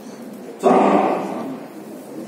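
A man's voice through a handheld microphone: one drawn-out, held syllable starting about half a second in and fading away within a second.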